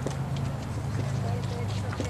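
Outdoor ambience: faint voices of people talking at a distance over a low, steady rumble, with a few light ticks.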